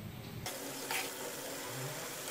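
Moong dal deep-frying in very hot ghee: a steady sizzle that comes in about half a second in.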